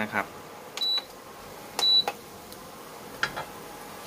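Two short, high beeps about a second apart from an induction cooktop's touch control panel as its setting is pressed.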